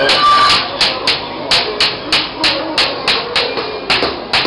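Hand hammer striking metal, likely flat kebab skewers, at about three even blows a second, each blow ringing briefly.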